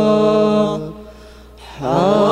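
A group of male voices singing an Islamic sholawat unaccompanied. A held note ends just under a second in, there is a short breath pause, and the voices come back in on a rising phrase near the end.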